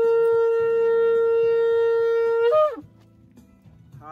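A long curved shofar blown in one steady, sustained note, the upper of its two pitches, which ends about two and a half seconds in with a brief upward flick before cutting off.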